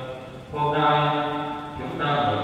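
A man's voice chanting a liturgical line in Vietnamese at the Mass, holding one long, steady note that starts about half a second in.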